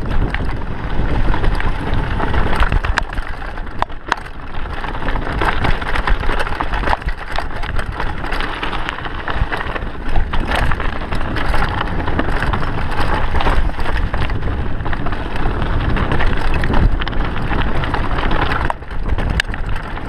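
Mountain bike riding fast down a dirt and stone singletrack: tyres rolling and crunching over the trail, with frequent clicks and knocks as the bike rattles over bumps, and wind rumbling on the microphone.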